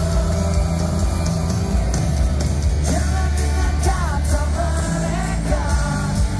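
Live rock band playing through a stadium PA, with a heavy sustained bass, drums and cymbals; a male lead vocal comes in about three seconds in.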